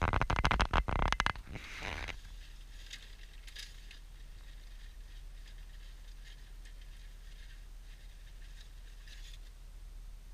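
Inside a moving car, a burst of scraping and rattling clicks that lasts about two seconds, then a faint steady low rumble with occasional light ticks.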